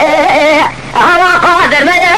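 Unaccompanied Kurdish dengbêj singing: a single voice drawing out 'ay ay' syllables in a wavering, heavily ornamented line. It breaks off for a moment under a second in, then carries on.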